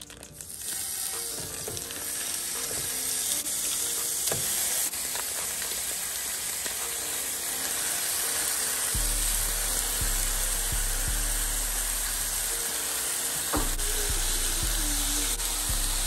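Raw ground beef sizzling in a hot frying pan, starting suddenly as the meat goes in and building over the first couple of seconds into a steady sizzle. Background music plays underneath.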